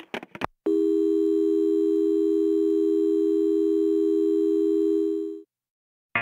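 Telephone line tone held steady for about four and a half seconds, following a recorded "please hang up" message, then cut off.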